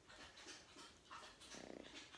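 Faint, soft animal noises close to the microphone: light snuffling, then a short, low pulsing grunt near the end.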